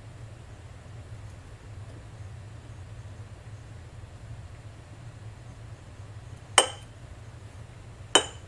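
A low steady hum, then one sharp clink against a glass mug about six and a half seconds in.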